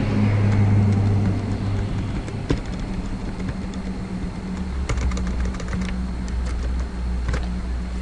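Scattered clicks from typing on a computer keyboard over a steady low hum. The hum drops lower about halfway through.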